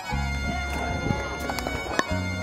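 Background music with held bass notes, over it several sharp pops of pickleball paddles striking the plastic ball in a rally, the loudest near the end.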